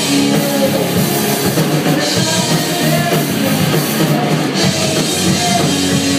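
Live rock band playing loudly and steadily, with drum kit, electric guitars and bass, recorded on a phone from the back of the room so the sound is rough.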